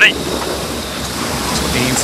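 Steady rush of wind and water from an AC75 foiling racing yacht sailing at around 40 knots.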